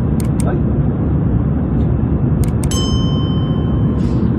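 Steady airliner cabin noise from the engines and airflow, with a cabin chime ringing once near the end and holding a clear tone.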